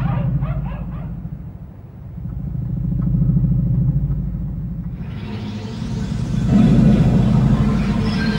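Deep low rumble in an animated soundtrack. A hissing rush joins it about five seconds in and grows louder near the end.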